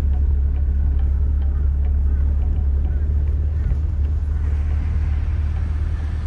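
Steady low rumble of a Mitsubishi Pajero 4WD driving along soft beach sand, heard from inside the cabin.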